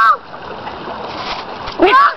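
Shallow creek water running over rocks, a steady rushing hiss, with a shouted word at the very start and another shout near the end.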